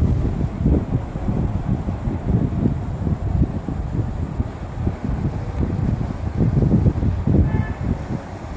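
Uneven low rumble of air buffeting the microphone, gusting up and down without a steady rhythm.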